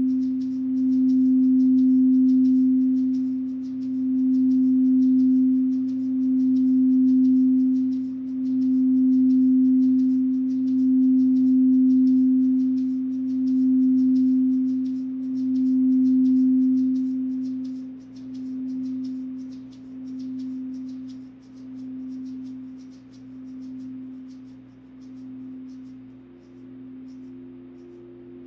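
Quartz crystal singing bowl ringing with one pure, sustained low tone that swells and wavers in a slow pulse about every two seconds. About two-thirds of the way through the tone begins to fade, and near the end a second, higher-pitched bowl joins it.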